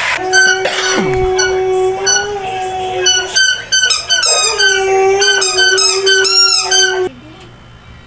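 A dog howling in long, drawn-out wavering notes over a steadier, lower held tone. The howl stops suddenly about seven seconds in.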